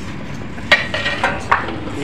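Stainless steel thali plates and serving utensils clinking as food is served, three sharp metallic clinks about a second in and soon after, over background kitchen noise.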